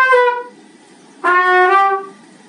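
Solo trumpet playing: a held note that ends about half a second in, then, after a short rest, a lower held note.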